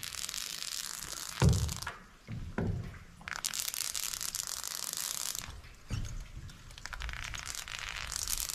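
Polyurethane foam subfloor adhesive hissing out of a foam gun's long nozzle in three spells that start and stop as the trigger is pulled and released. A few heavy thumps come between them, the loudest about one and a half seconds in.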